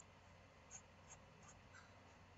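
Near silence: room tone with a few faint computer-mouse clicks.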